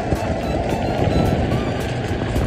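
Background music over the steady rumble and road noise of a small vehicle driving along a concrete road.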